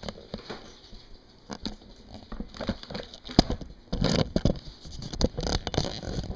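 Handling noise from a camera being moved and set down on a box: irregular knocks, taps and rustles, with one sharp knock about three and a half seconds in and a thicker cluster of bumps after it.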